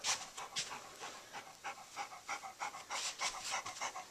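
Golden retriever panting close to the microphone, in quick, even breaths of about three or four a second.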